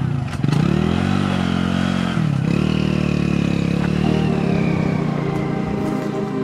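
Motorcycle engine pulling away under acceleration. Its pitch climbs, drops back twice as it shifts up through the gears, then holds steady.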